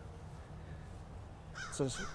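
Faint outdoor background noise with a low steady hum during a pause in speech; a man's voice begins near the end.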